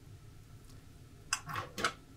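A frying pan and chopsticks clattering as a rolled omelet is flipped and the pan goes back onto the gas hob: a few sharp knocks and short scrapes about a second and a half in.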